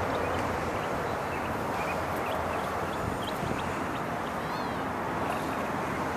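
Steady outdoor background noise, an even wash with no distinct events, with a few faint short high chirps scattered through it.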